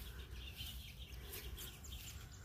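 Faint birds chirping, a few short high calls, over a steady low rumble.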